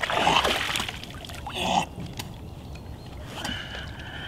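Shallow seawater splashing and sloshing around a spearfisher's legs and long freediving fin as he pulls the fin on, two short splashes in the first two seconds, then quieter lapping.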